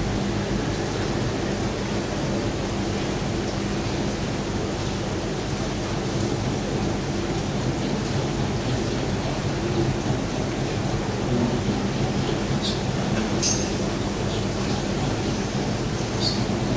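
Steady hiss with a faint low hum underneath, even throughout, with a couple of faint ticks near the end.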